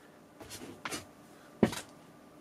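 Fingers brushing against a soft silicone duck night light, then a sharper tap about one and a half seconds in as it is tapped to switch it off. The sounds are faint.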